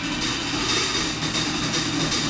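Live jazz drum kit played with sticks: a steady wash of cymbals with light strokes, over upright double bass notes.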